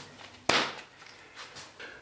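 A single sharp click of a brass compression fitting body knocking onto the end of a lead pipe about half a second in, followed by faint handling knocks.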